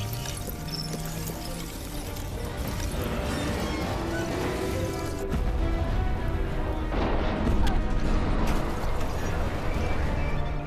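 Dramatic film score over the deep rumble of a starship's thrusters straining at full power for liftoff. The rumble grows louder about five seconds in, with a few sharp hits near the end.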